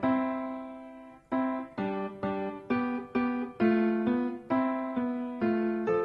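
Background music: a piano-like keyboard playing a simple melody of single notes, each struck and fading away. The first note rings on for about a second, then the notes come at about two a second.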